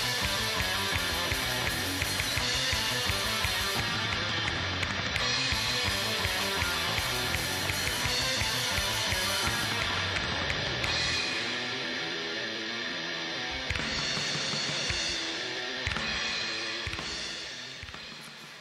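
A recorded metal track with guitars and fast, dense drumming, fading out over the last couple of seconds.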